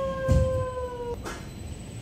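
A young child's drawn-out cry, held for about a second and a half and sliding slightly down in pitch, with a dull thump about a third of a second in as he lands on the carpet slope.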